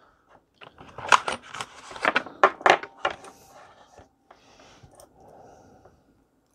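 Cylindrical lithium-ion cells clattering as one is picked out of a cardboard box of loose cells and put in place for testing: a quick run of sharp clicks and knocks in the first half, then fainter rustling and handling noise.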